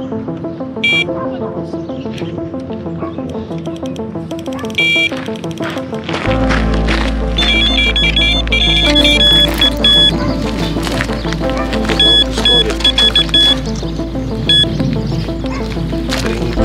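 Background music, with an electronic carp bite alarm sounding short high beeps a few times, then rapid runs of beeps about halfway through: a carp taking line on a run. The music fills out with a deep bass about six seconds in.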